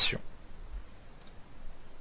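Two faint, short computer mouse clicks, about a second in and again a moment later.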